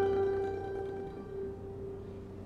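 An F-style mandolin's last chord ringing out after the picking stops, one mid-pitched note holding longest as it slowly fades away.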